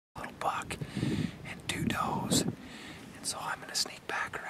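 A man speaking in a whisper, hushed words with sharp hissing 's' sounds, starting abruptly just after a silence.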